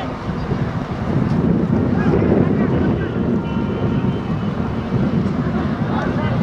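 Wind buffeting the camera microphone in a steady low rumble, with the indistinct chatter of a crowd of spectators beneath it.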